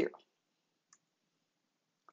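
Near silence after a spoken word ends, broken once by a single faint click about a second in.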